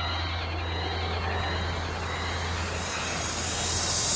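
A noise interlude in a thrash metal recording: a steady low drone under a rush of noise that swells louder and brighter toward the end, sounding like an engine or aircraft passing.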